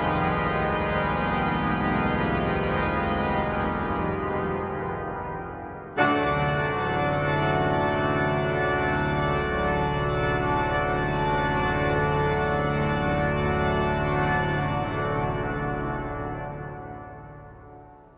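Pipe organ holding loud, full closing chords: one chord sounds at the start, a new chord enters suddenly about six seconds in and is held, and near the end it is released and dies away slowly in the chapel's reverberation. These are the final chords that end the piece.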